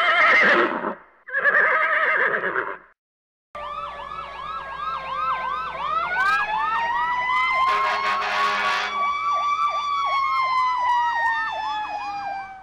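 A horse whinnying twice, then after a short pause a police siren: a fast, repeating yelp joined by a wail that rises, holds and slowly falls. A brief burst of hiss is heard partway through the siren.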